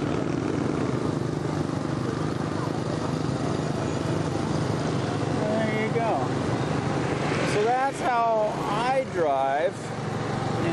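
Motorbike engine and road noise from riding in city scooter traffic: a steady drone. A voice talks over it in the last few seconds.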